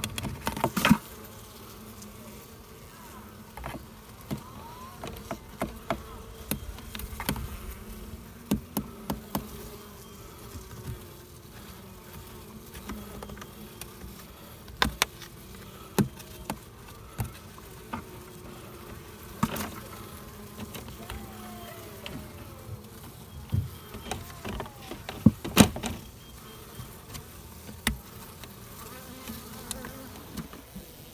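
Honey bees buzzing steadily around an exposed colony, with scattered sharp clicks and knocks of a serrated blade cutting comb away from the wooden boards; the loudest knocks come close together near the end.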